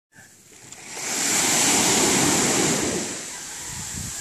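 Small wave washing up onto a sandy beach: the rush of surf swells about a second in and eases off after three seconds.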